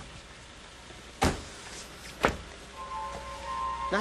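Two car doors slamming shut about a second apart, over quiet background music.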